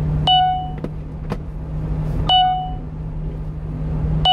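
Steady engine and road drone in the cab of a 1-ton truck driving at speed, with a short electronic chime sounding twice, two seconds apart, each fading quickly.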